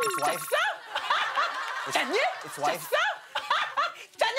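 People laughing and exclaiming in a run of short voice sounds, with a short spoken question about two and a half seconds in.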